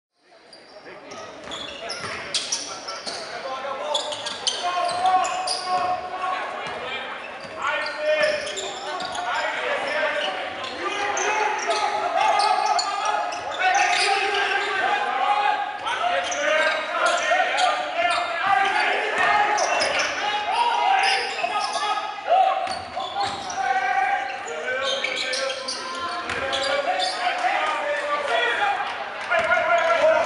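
Basketball bouncing on a hardwood gym floor during a game, with indistinct voices of players and spectators echoing in the large hall. The sound fades in over the first second or two.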